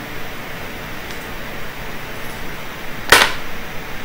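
A single sharp knock about three seconds in, over steady room hiss in a lecture hall's sound system.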